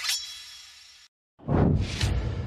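Post-production sound effects: a bright, ringing metallic hit that fades out over about a second, a short dead silence, then a rising whoosh near the end that leads into another hit.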